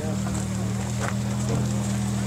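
A vehicle engine running steadily at idle, a low even hum, with faint voices of people around.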